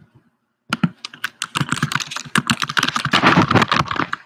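Fast typing on a computer keyboard: a dense run of key clicks that starts just under a second in and grows louder toward the end.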